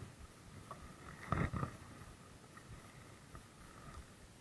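Faint knocks and handling noise aboard a small wooden outrigger fishing boat, loudest as a quick cluster of knocks about a second and a half in.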